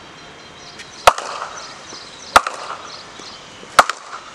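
Cricket bat striking balls: three sharp cracks about 1.3 seconds apart, one pull shot after another as balls are fed in quick succession.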